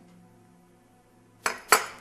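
A china teacup clinks twice, about a quarter second apart, about one and a half seconds in, after a quiet start.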